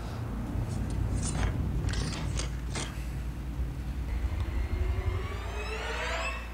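A TV drama's sound effects: a series of short metallic clinks and scrapes over a low rumble, then a pitched sound rising steadily over the last second and a half.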